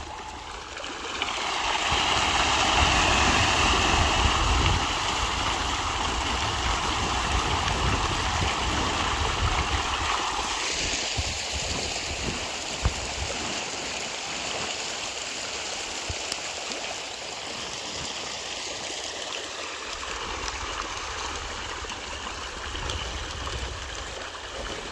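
Steady rushing, splashing water with an intermittent low rumble; the sound changes character about ten seconds in.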